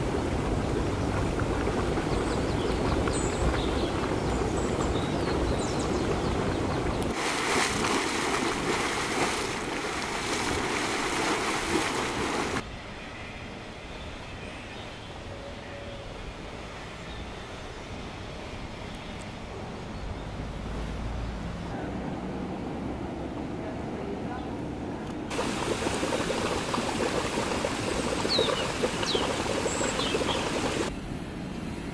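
Volcanic hot springs and fumaroles bubbling and hissing with steam: a steady rushing, water-like noise that changes in level at several cuts and is quieter in the middle stretch.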